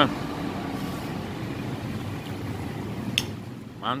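Steady background road-traffic noise, with a metal spoon clinking sharply against a glass plate at the start and again about three seconds in.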